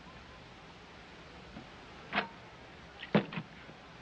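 Short knocks of glassware, a drinking glass handled at a tray holding a water pitcher: one about two seconds in and a brief cluster near three seconds. They sit over the steady hiss of an old film soundtrack.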